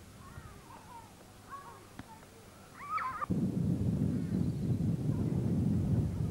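Distant high-pitched shouts and squeals of children at play, with one louder rising shout about three seconds in. Then a loud, steady low rumble of wind buffeting the camcorder microphone starts suddenly and covers the rest.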